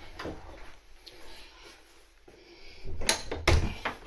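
A door being unlatched and opened: after a quiet stretch, two sharp clunks about three seconds in.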